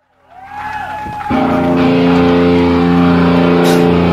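Live sludge-metal band: after a brief dropout, electric guitar feedback swells with its pitch sliding up and down. About a second in, distorted guitar and bass strike a loud chord and hold it ringing.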